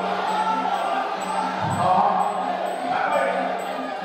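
Muay Thai sarama fight music: a wavering reed-pipe melody over regular drum beats and cymbal strikes, with crowd voices underneath.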